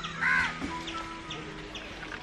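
A crow caws once, loudly, about a quarter-second in, over outdoor ambience with short high chirps repeating. Soft background music runs underneath.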